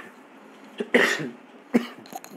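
A person coughing: a loud cough about a second in, with a shorter one just before it and another sharp one near the end.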